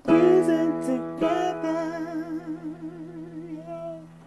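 The close of a song: a singing voice holds a long wavering note over a steady sustained chord, and the music fades away toward the end.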